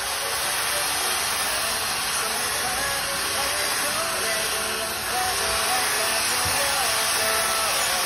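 Cordless drill boring steadily into a steel angle bracket, a dense grinding hiss with faint voices behind it.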